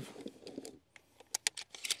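Shotgun shell being thumbed into the tubular magazine of a Saricam SS-4, a Turkish clone of the Benelli M4: faint handling rustle, then a few sharp metallic clicks in the second half as the shell is pushed in and seats.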